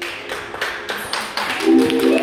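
Scattered hand claps from an audience as a dance number ends, growing into applause. Voices cheering join in during the last half-second.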